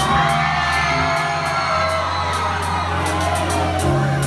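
Live concert music through a club PA: a beat with deep bass and crisp high ticks. The crowd whoops and cheers over it.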